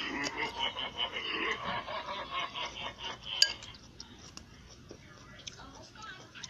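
Indistinct voices for the first three seconds or so, then a single sharp click, followed by quieter room noise with a few small ticks.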